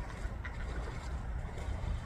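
Steady low outdoor rumble with a faint hiss above it, with no calls, splashes or other distinct events.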